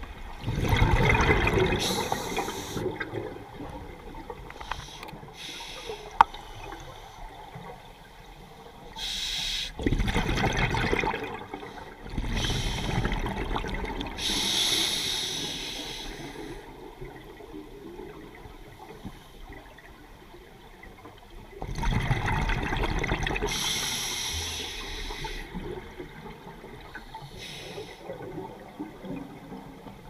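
Scuba diver breathing through a regulator underwater: long bubbling rushes of exhaled air, several times and several seconds apart, with quieter water wash between.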